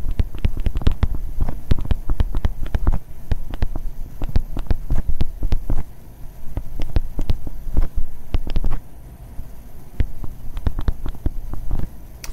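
Stylus writing on a tablet, picked up close by the microphone: a rapid, irregular run of taps and clicks with low thuds, and short pauses between words.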